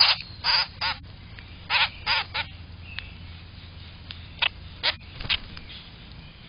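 Common grackles giving short calls in groups of three: one group at the start, another about two seconds in, and a third near the end.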